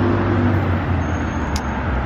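Steady low rumble of nearby road traffic, with a short click about one and a half seconds in.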